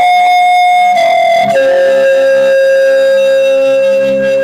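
Slow instrumental music of long held notes; the melody steps down to a lower note about a second and a half in and holds it.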